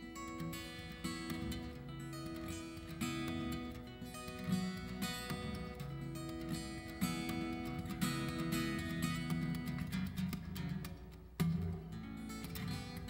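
Steel-string acoustic guitar played fingerstyle, live: a solo instrumental with plucked bass notes under a picked melody, with a short lull and then a hard-struck note near the end.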